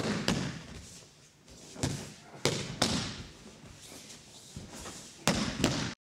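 Thuds of thrown aikido partners landing on the dojo mat in breakfalls, about five separate impacts spread out with quieter shuffling between; the sound cuts off suddenly near the end.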